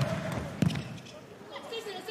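A volleyball struck hard twice: the serve at the start and a second, louder hit about two thirds of a second later, as the serve is received. Both are heard over the voices of a large arena crowd.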